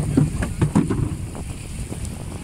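Wind noise on the microphone over choppy sea water, with several short slaps of water against the boat in the first second.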